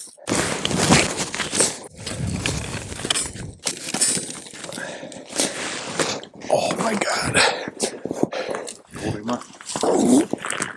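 Sticks of a beaver lodge crunching and cracking, with the clatter of a steel conibear body-grip trap, as a large beaver is worked free of the trap and hauled up. The crunching is loudest and densest in the first few seconds.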